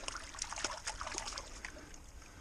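Shallow creek water trickling, with faint scattered splashes and small ticks.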